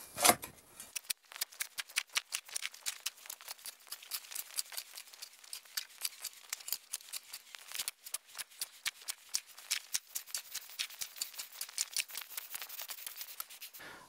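Shovel digging into and turning over a pile of soil mixed with IMO 3 on a dirt floor: a quick, continuous run of scrapes and crunches of the blade in the earth, with a short break about halfway through.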